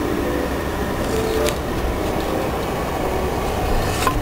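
Steady engine and tyre rumble of a car being driven, heard from inside the cabin.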